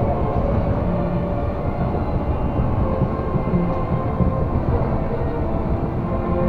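Tokyo Disney Resort Line monorail car running between stations, heard from inside the car: a steady low rumble of the train in motion with a faint hum of tones over it.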